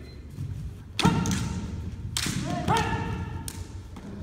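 Naginata fencers clashing: sharp strikes and stamps at about one second in, again past two seconds and near the end. Each is followed by long shouted kiai calls that ring in the hall.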